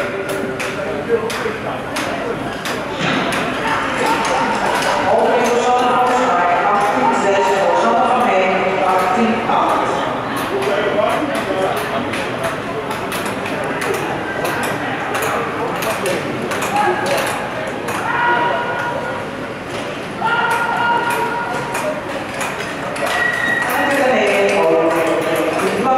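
Voices in a large, echoing rink hall, from spectators or a public-address announcer, with many short sharp clicks scattered through.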